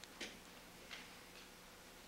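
Near silence: courtroom room tone with a faint steady hum, broken by two soft clicks about a fifth of a second and a second in.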